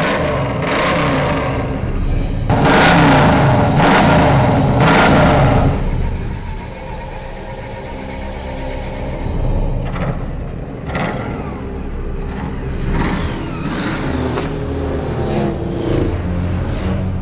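Ford XB Falcon coupe's engine revving and running, loudest a few seconds in, then settling and rising in revs again near the end.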